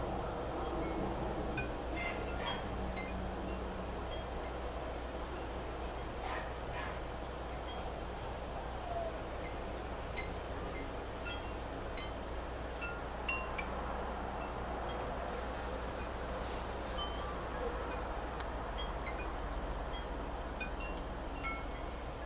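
Faint, scattered high chime notes ringing at irregular moments over a steady low hum.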